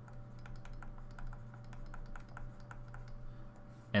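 Faint, irregular light clicks and taps of a stylus writing on a tablet screen, over a steady low electrical hum.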